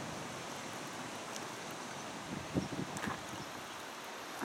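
Steady outdoor waterside ambience: an even soft hiss of wind and water, with a couple of faint low knocks about two and a half to three seconds in.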